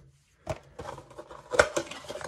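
Cardboard box being set down and handled on a tabletop: a sharp knock about half a second in, then light clicks and rustling, with a louder knock near the end.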